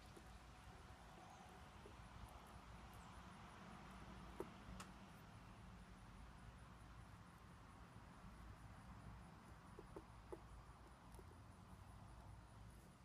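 Near silence: room tone with a few faint ticks from solder wire being wound by hand around a copper soldering-iron tip, a pair of them about four and a half seconds in and a few more around ten seconds in.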